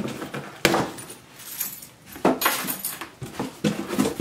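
Hands rummaging in a cardboard shipping box, cardboard and packaging rustling and scraping, with two sharper knocks, one under a second in and one just past two seconds.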